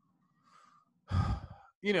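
A man's audible breath into the microphone, about half a second long and about a second in, taken in a pause between phrases, with speech starting again just after.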